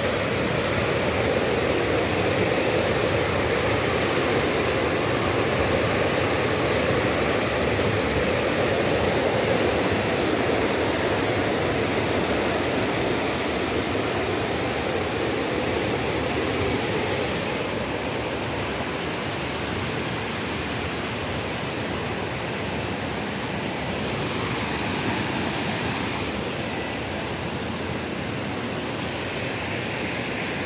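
Water rushing through a dam's outlet area during sediment flushing, churning against the concrete piers in a steady rush that eases slightly after halfway.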